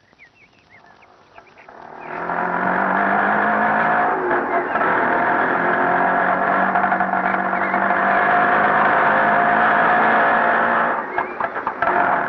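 Two-stroke auto-rickshaw engines running steadily as the rickshaws drive up, starting about two seconds in and cutting off near the end with some clatter.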